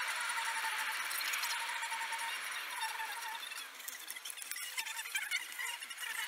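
Steady road and wind hiss inside a moving car on a highway, with a thin, high squeal-like tone over it for the first two seconds and again briefly about three seconds in.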